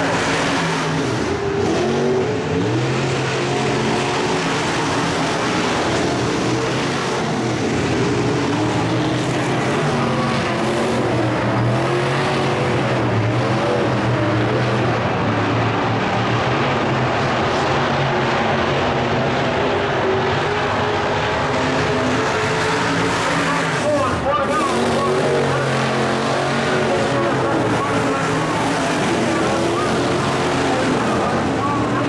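Several IMCA Modified race cars' V8 engines running together at a steady, low speed, the pitch drifting slowly up and down with no hard acceleration, as when the field circles under a caution.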